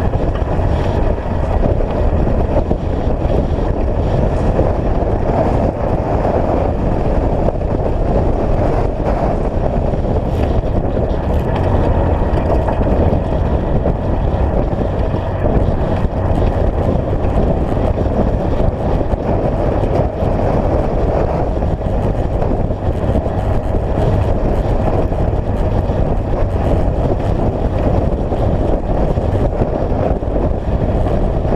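Side-by-side UTV driving steadily on a dirt road: a constant engine drone mixed with tyre noise over gravel.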